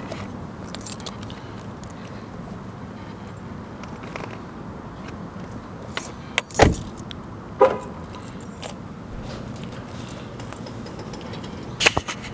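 Camera handling noise: rustling and rubbing against clothing over a steady low background hum, with a few short sharp clicks or jingles, two of them a second apart a little past the middle.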